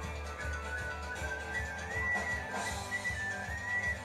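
Irish folk band in an instrumental break: a tin whistle plays the tune in quick stepping notes over strummed acoustic guitar and bass guitar, heard through a television's speaker.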